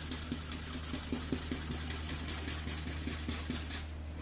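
Felt-tip marker scribbling back and forth on paper to colour in an area, in quick scratchy strokes of about five a second that stop just before the end.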